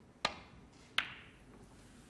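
Snooker break-off: a sharp click of the cue tip striking the cue ball, then about three quarters of a second later a louder click as the cue ball hits the pack of reds, ringing briefly.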